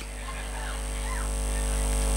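Steady low electrical hum from the public-address sound system, swelling gradually louder, with a few faint short chirps about half a second to a second in.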